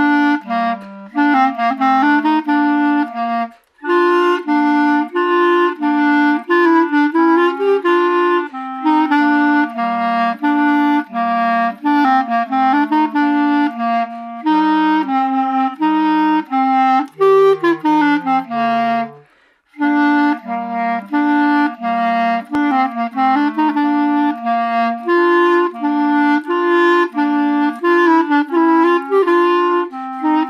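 Two clarinets playing a simple two-part duet in harmony, note by note in an even beat. There are short breaks about four seconds in and again about two-thirds through, after which the tune starts over from the top.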